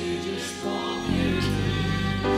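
Live Christian worship music: a band playing with voices singing held, wavering notes, and deeper low notes coming in about a second in.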